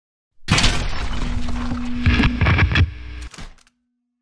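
Sound effects of an animated logo intro: a loud, dense rush of noise with a steady low hum and several heavy impacts between about two and three seconds in, cutting off suddenly shortly before the end.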